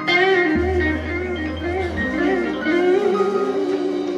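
Live band playing the closing bars of a song: melodic lines with a quick wavering pitch over keyboard and guitars, with a low held bass note from about half a second to two seconds in.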